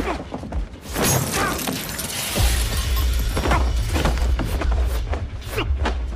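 Fight sound effects: a run of punch and body impacts against the elevator's steel walls, with a long crash about a second in. A driving action score with a heavy bass comes in about two and a half seconds in.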